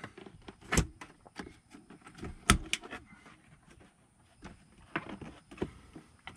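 Plastic door-sill trim being pulled at by hand, its clips and plastic giving a few sharp clicks and knocks, the loudest about two and a half seconds in.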